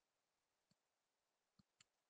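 Near silence broken by three faint clicks, about 0.7 s, 1.6 s and 1.8 s in, typical of a computer mouse clicking.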